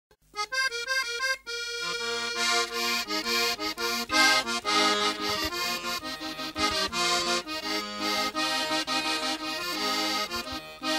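Accordion-led Sesotho famo music. A quick run of accordion notes opens it, and about two seconds in the band comes in with a bass line and a steady beat.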